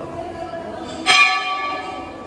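A metal temple bell struck once about a second in, its ringing tone fading slowly.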